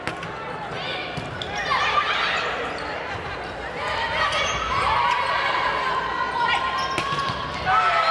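Volleyball rally in a large gym: a sharp smack of a hand on the ball at the serve and another hit near the end, with players' shouts and calls echoing in the hall.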